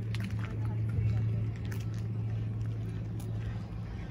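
A steady low hum with indistinct voices in the background.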